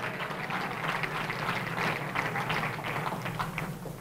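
Congregation applauding, a steady patter of many hands clapping that eases slightly near the end.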